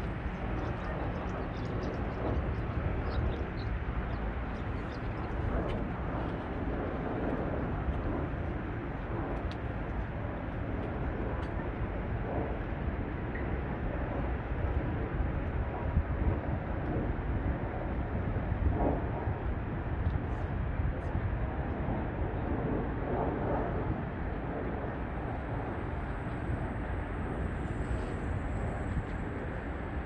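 Steady city traffic noise with a low rumble, swelling now and then as vehicles pass.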